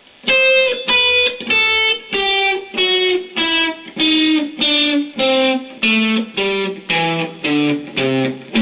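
Electric guitar on a clean amplifier setting with a little overdrive, playing a modified A minor pentatonic scale slowly, one note at a time. The notes come about two a second and step steadily down in pitch from the high strings to the low.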